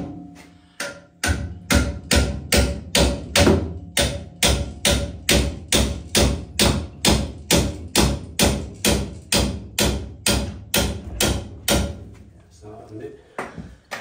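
Rapid, steady hammer blows, about three a second, on a seized nut at the base of an old water heater. They stop near the end. The nut will not budge.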